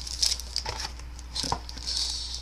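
Trading-card hanger box packaging crinkling and rustling in short bursts as it is opened and handled, with a light click about one and a half seconds in.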